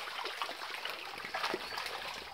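Climbing perch splashing and smacking at the water surface of a pond as they feed on thrown pellets: a quiet, continuous patter of small splashes, with a couple of sharper ones about halfway through.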